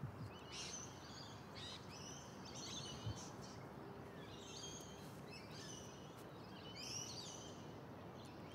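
Birds chirping and calling again and again over a steady outdoor background hiss, with a single soft thump about three seconds in.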